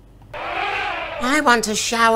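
A short hiss of water spraying, about a second long, as an elephant squirts water from its trunk in a children's story recording, followed by a high-pitched cartoon character's voice beginning to speak.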